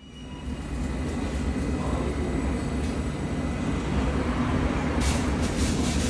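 London Underground S Stock train running along a station platform: a steady low rumble that builds up over the first second, with hiss added near the end.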